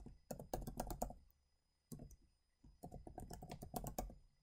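Computer keyboard typing: a quick run of keystrokes in the first second, a pause, then another run of keystrokes from just before three seconds in.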